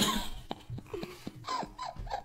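Soft, breathy laughter from a man and a woman: a short burst at the start, then quiet chuckles and breaths.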